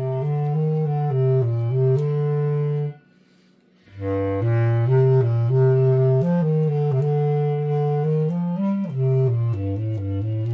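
Bass clarinet playing a melody of short notes in its low register, moving step by step. It stops for about a second near the three-second mark, then carries on.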